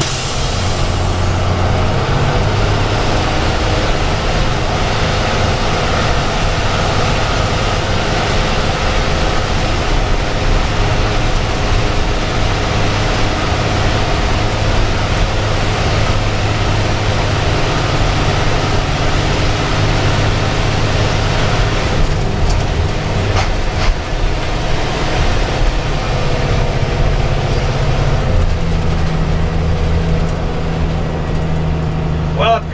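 Converted school bus's engine running under steady load with tyre and road noise, heard from the driver's seat while driving through a road tunnel. The engine note rises near the end.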